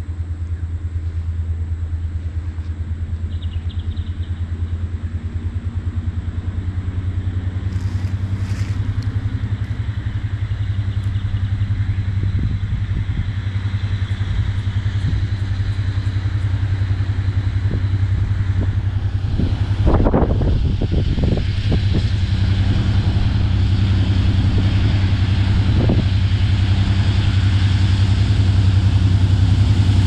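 Diesel locomotive engine approaching the crossing: a steady low throbbing drone that grows gradually louder, with a brief rougher rush of noise about two-thirds of the way through.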